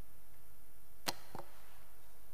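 A single sharp click about a second in, followed by a fainter click a moment later, over a steady low hiss.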